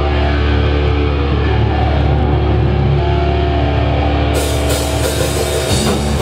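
Live heavy metal band playing loud: distorted electric guitars and bass holding a heavy low chord over drums. Cymbal crashes come in about four seconds in, and the deep bass drops out near the end.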